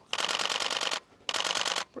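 Canon EOS-1D X shutter firing in high-speed continuous mode: two rapid bursts of evenly spaced clicks, the first about a second long and the second about half a second, with a short pause between them.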